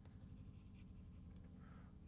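Faint chalk writing on a blackboard.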